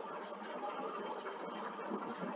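Faint, steady background hiss and room noise over a video-call audio feed, with nothing sounding out of it.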